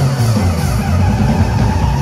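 Live band playing amplified pop music: drum kit, bass, electric guitar and keyboard, with a heavy, steady low end.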